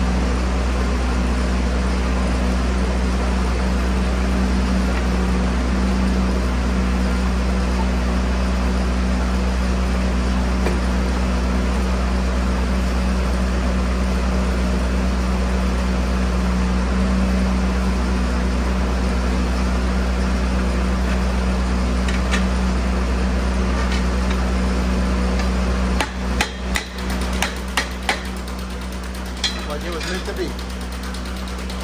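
A steady low machine hum, then near the end the hum drops and a quick, irregular run of sharp metal knocks follows as the steel track hardware is struck while the dozer track's master link is fitted.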